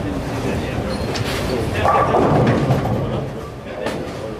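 Bowling alley sound: bowling balls rolling down the lanes with a low rumble and pins clattering, with a louder burst of clatter about two seconds in, over background chatter.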